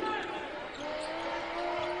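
Basketball being dribbled on a hardwood court under arena crowd noise, with a long held voice-like tone coming in about a third of the way through.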